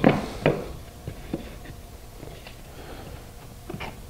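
Faint wood-on-wood knocks and scrapes as two pieces of scrap wood are pushed together to test-fit a half-lap joint, a few small taps scattered through.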